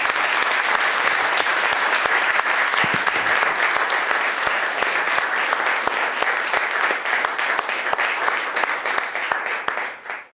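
Audience applauding: dense, steady clapping from a large room of people, dying away at the very end.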